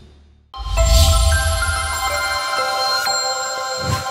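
News channel logo sting: a bright electronic chime of several held tones comes in suddenly over a deep bass hit about half a second in. The bass drops out about halfway, the chime rings on, and there is a short thump near the end.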